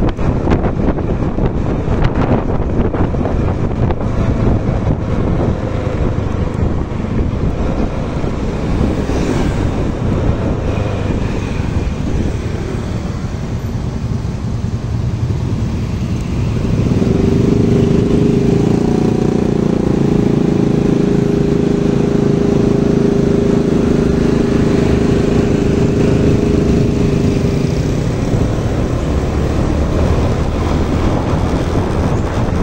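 Road vehicle noise with wind buffeting the microphone, as from riding along a busy street. A little past halfway, a steady engine drone sets in and holds for about ten seconds before dropping away near the end.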